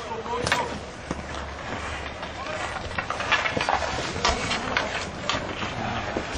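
Players on an outdoor sponge hockey rink calling out indistinctly, with scattered sharp clacks of hockey sticks striking through the game, over a low steady rumble.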